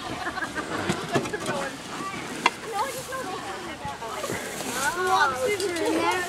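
Voices of several people talking in the background, growing louder near the end, with one sharp knock about two and a half seconds in.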